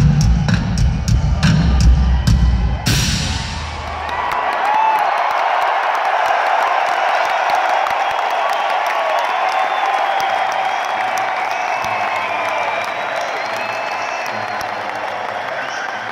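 Rock drum kit played hard, with heavy bass-drum hits and cymbal strikes, closing on a final cymbal crash about three seconds in. A large arena crowd then cheers and screams, with shrill whistles.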